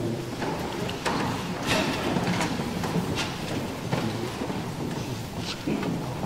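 A congregation getting to its feet: scattered, irregular knocks, scrapes and shuffles of chairs and feet.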